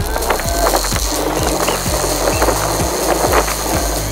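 Thin LED sign scraping and rattling over asphalt as it is dragged on a rope behind a truck. Background music with a steady beat plays underneath.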